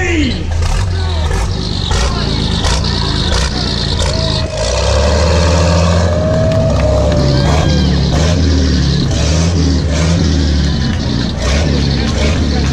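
The 900-cubic-inch six-cylinder engine of a 1918 boat-tail racer, with a six-inch stroke, running with a deep, steady low note as the car is sent off from the start, a little louder from about four and a half seconds in. A long held high tone sounds over it for a few seconds in the middle.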